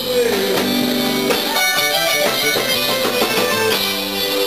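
Live band music: an instrumental passage led by guitar, with sustained notes and no lead vocal.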